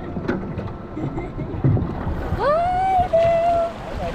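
Water sloshing and splashing close to the microphone at the surface, then, a little past halfway, a young child's drawn-out vocal call that rises and holds its pitch for about a second.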